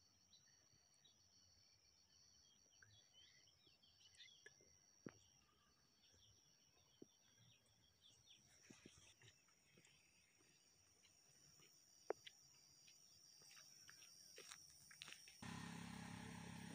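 Near silence: faint rural outdoor ambience with a steady high-pitched thin drone and scattered faint bird chirps and small clicks. Near the end a louder, fuller outdoor background comes in.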